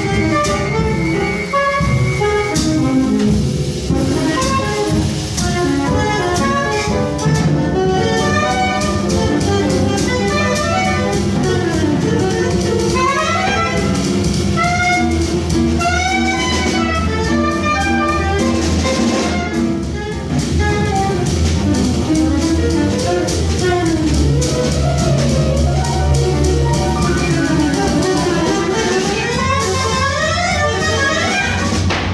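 Live jazz quartet playing, led by a soprano saxophone in fast runs of notes that sweep up and down, over drums and low sustained notes.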